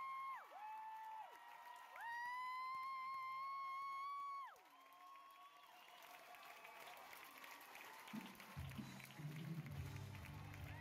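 Theatre audience applauding and cheering at a musical's curtain call. A high voice holds one long note twice, each note sliding down at its end, before the clapping and cheering swell. Low band music comes in about eight seconds in.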